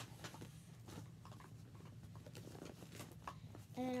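Soft, scattered rustling and light clicks of a clear plastic bag and small toys being handled and packed, over a faint steady low hum.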